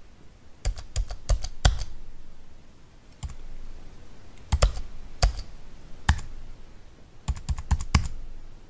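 Computer keyboard keystrokes typing in uneven runs: a quick burst of clicks, a few single taps spaced a second or so apart, then another quick burst near the end.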